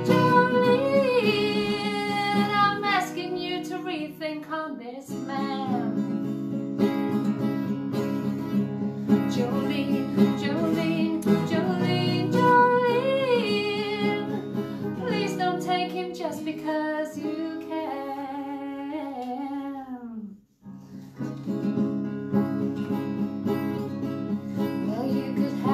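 A woman singing over a strummed steel-string acoustic guitar. About twenty seconds in, both stop for a moment, then the guitar starts strumming again.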